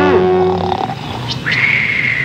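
Comedy sound effects: a short rising-and-falling cry, a held tone, then a hiss and a long whistle that slowly slides down in pitch, marking a character slumping into sudden sleep.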